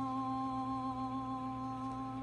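A woman's voice singing unaccompanied, holding the last note of the song as one long, steady note.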